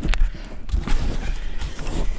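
Handling noise from a handheld camera being swung down to the van's sill: a steady low rumble with a few short knocks and rustles near the start.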